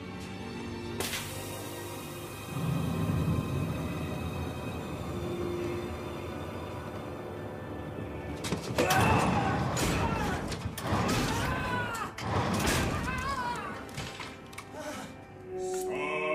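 Film soundtrack: dark sustained music with a sharp crash-like hit about a second in, then loud voices with wavering pitch from about halfway through.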